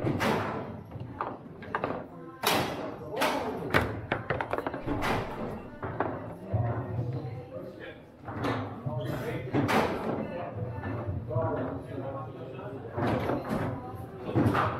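Foosball play: irregular sharp knocks, about one every second, as the ball is struck by the plastic men and the rods bang. Voices and music murmur in the background of a large hall.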